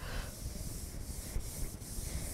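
Faint, steady rubbing hiss of a hand sweeping across the glass of an interactive touchscreen board while notes are erased.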